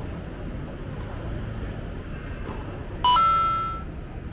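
An electronic chime sound effect: a bright ding about three seconds in that starts on a brief lower note, steps up, and rings away within a second. Under it runs a steady low background noise.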